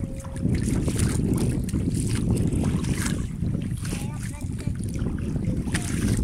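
Wind buffeting the phone's microphone on open water as a steady low rumble.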